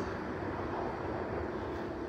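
Steady background noise with no distinct events: room tone.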